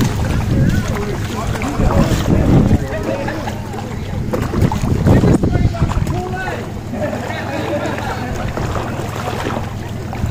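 Wind buffeting the microphone in uneven gusts, with faint chatter of onlookers underneath.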